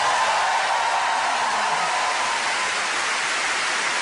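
Studio audience applauding steadily, a dense, even clapping.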